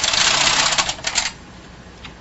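Bond knitting machine carriage pushed across the needle bed to knit a row. It makes a rasping rattle lasting a little over a second that ends in a few clicks.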